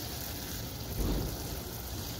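Garden hose spray nozzle showering water onto soil and small plants, a steady hiss of spray.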